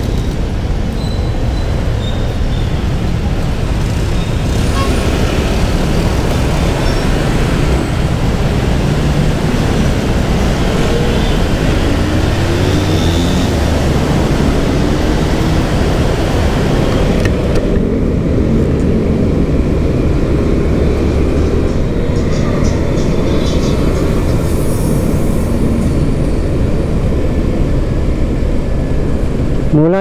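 Motorcycle riding in city traffic, engine running under a steady rush of wind and road noise on the microphone; the engine pitch rises a few times about eleven to fourteen seconds in as the bike accelerates.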